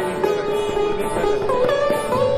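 Sitar playing raga Yaman, sustained plucked notes with pitch slides (meend), the melody bending upward about a second and a half in, with tabla accompaniment.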